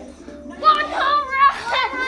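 A class of young children chanting numbers together along with a counting-to-100 video. The voices get much louder about half a second in, climbing toward the hundred.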